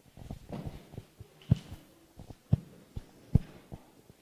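A few dull, low thumps at uneven intervals, the three loudest roughly a second apart, with smaller knocks between them over a faint steady hum.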